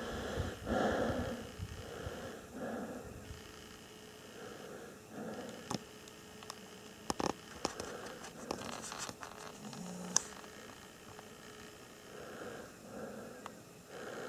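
Faint breathing and soft handling rustle close to the microphone, coming in gentle swells every second or two, with a few small sharp clicks around the middle.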